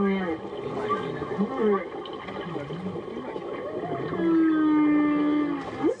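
Male humpback whale song picked up by a hydrophone and played through a portable speaker: a string of moans that rise and fall in pitch, then one long, steady low moan near the end. It is the courtship song that males sing to attract females on the breeding grounds.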